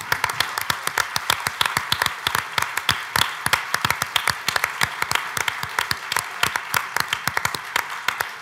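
Audience in a lecture hall applauding: many hands clapping in a dense, steady patter.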